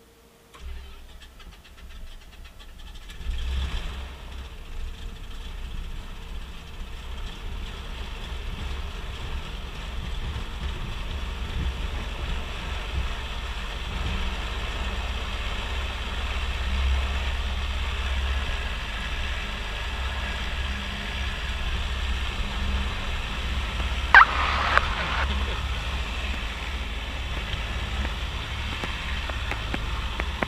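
Piper Navajo's piston engines idling, heard inside the cockpit as a steady low hum that gets louder about three and a half seconds in. A brief high squeak comes about 24 seconds in.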